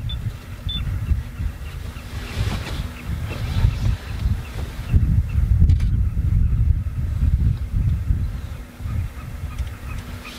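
Wind buffeting the microphone in an uneven low rumble, over the faint steady hum of an idling vehicle engine.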